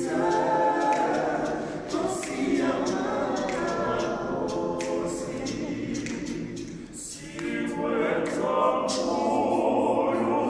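Male vocal group singing a cappella in harmony, no instruments, growing quieter about seven seconds in before coming back in full.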